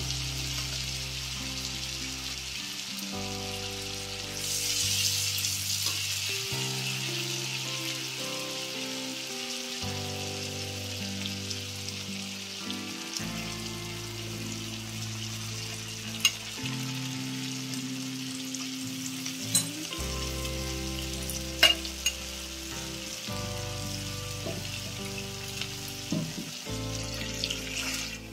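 Oil sizzling steadily in a nonstick wok as a turmeric-yellow paste fries in it. A silicone spatula stirs through it, with a few light clicks against the pan. Soft background music runs underneath.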